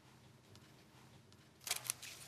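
Faint room tone, then a quick run of sharp clicks near the end.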